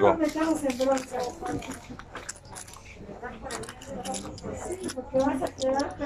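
Mostly quiet voices talking, with scattered small clicks and rustles of things being handled at a shop counter.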